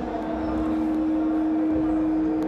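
A single steady droning tone, held without wavering over a low rumble, as backing to a chanted religious lament.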